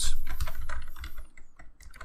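Typing on a computer keyboard: a quick run of key clicks, busiest in the first second and thinning out toward the end.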